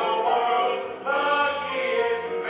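Cast voices singing together in a stage musical number. One phrase breaks off about a second in and the next one starts.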